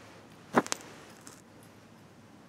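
Two quick small clicks about half a second in, a small rusty metal bracket with a bolt handled in the fingers.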